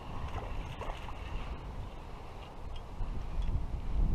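Wind buffeting the action-camera microphone: a rumbling low roar that grows louder in gusts toward the end, with a few faint handling noises as a small bass is reeled in and taken in hand.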